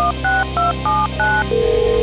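Telephone touch-tone (DTMF) keypad dialing: about five short two-tone beeps in quick succession as a number is keyed in. About one and a half seconds in, a steady tone starts as the call rings through to the line.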